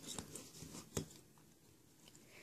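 Faint clicks of round metal nail-stamping plates being set down on a stack and handled, the clearest single click about a second in.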